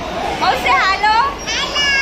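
Children talking and calling out in high-pitched voices over a steady background din.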